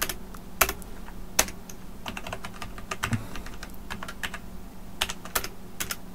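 Keys of a computer keyboard being pressed in irregular, uneven keystrokes while code is edited, over a faint steady low hum.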